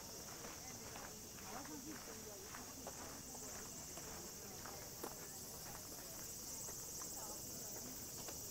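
Cicadas buzzing in a steady high-pitched drone, with the walker's footsteps about twice a second and faint distant voices underneath.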